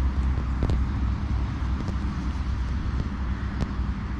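Steady traffic noise from a nearby motorway: a continuous low rumble and rush with no single vehicle standing out.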